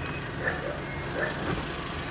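Suzuki Every Wagon DA64W's 660 cc three-cylinder turbo engine idling steadily under the front seat, heard through the open engine hatch. A light knock about one and a half seconds in.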